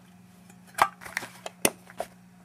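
Two sharp clicks about a second apart, with a few faint ticks between them, as a small soap dish holding a bar of soap is handled and its pieces knock together.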